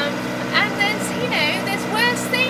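Steady drone of a sailing ketch's auxiliary engine running under way, a low even hum under brief snatches of a woman's voice.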